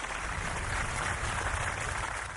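Studio audience applauding: an even, steady clatter of clapping with no music.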